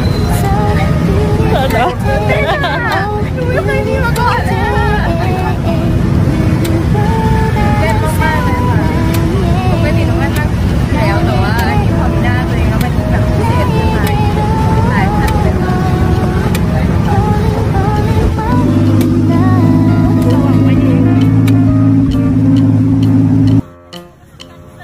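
A tuk-tuk's engine running under a woman's talking, as a steady low drone that grows steadier and stronger near the end before cutting off abruptly.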